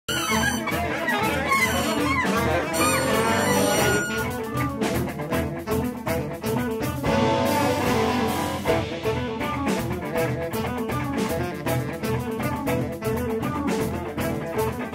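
A small band playing together: drum kit, electric bass and electric guitar with a synthesizer, a lead line bending in pitch during the first couple of seconds.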